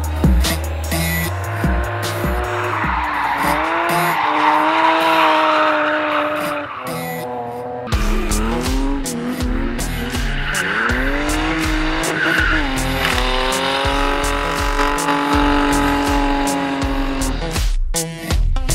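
Drift cars sliding: an engine revving up and down and then held at high revs, with tyres squealing across the track, in two passes split by a sudden cut about eight seconds in. Music with a low steady beat runs underneath.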